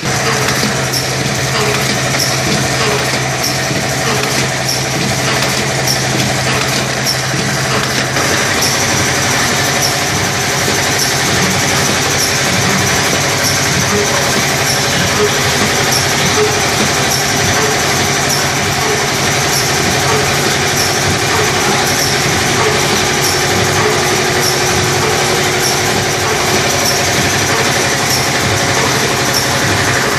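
Automatic popcorn pouch packing machine with a collar-type cup filler, running continuously: a steady mechanical hum and rattle with regular clicking from its moving parts. A low hum in it stops about eight seconds in.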